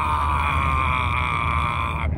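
A person's long wordless shout held on one steady pitch, heard inside a moving car over the low rumble of the road and engine.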